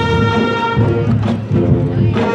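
Marching band playing: brass and woodwinds sustaining chords over drums, the chord changing about a second in and dipping briefly before a new chord near the end.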